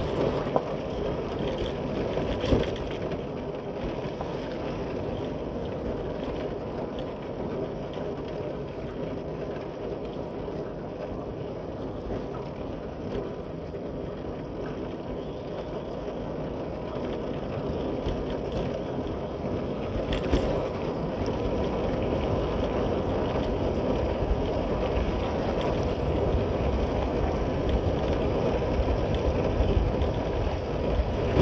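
Motorcycle ridden at low speed over a rough dirt and gravel road: steady engine and road noise with wind on the microphone, and a few sharp knocks from bumps.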